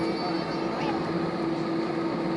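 Airbus A320 cabin noise while taxiing: the steady hum of the jet engines and cabin air, with a constant droning tone.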